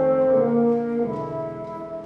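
Oboe and bassoon playing held notes together in live classical chamber music, moving to new notes about a second in, with the phrase fading away near the end.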